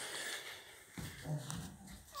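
Faint rustle of a hand pressing and shifting on clothing over a patient's lower back, with a short, low, faint vocal sound about a second and a half in.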